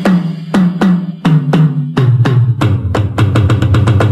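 Tom-tom drums from a Creative Labs sound card's drum kit, played as a fill. Strokes come about three a second, stepping down from higher to lower toms, then speed up into a quick roll near the end.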